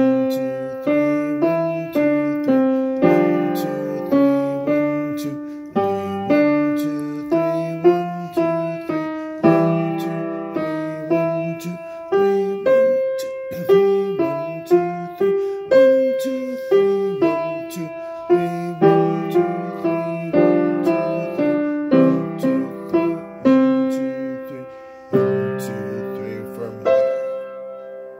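Acrosonic upright piano played with both hands: a simple melody of single notes over lower chords, each note struck and decaying. It ends on a held chord that rings out and fades.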